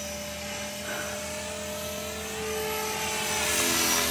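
Blade 450 3D electric RC helicopter in flight: the steady whine of its motor and spinning rotor blades, growing louder near the end as it comes closer.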